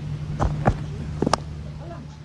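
Cricket field sound from a broadcast pitch microphone over a steady low hum: a few short knocks, the sharpest about a second and a third in, the bat striking the ball as the batsman lofts it.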